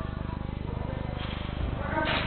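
Distant voices of players calling out, echoing in a large indoor sports hall over a steady electrical buzzing hum, with a louder sound near the end.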